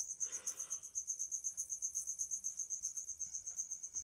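Insect trilling in the background: a steady high-pitched pulsing at about nine pulses a second.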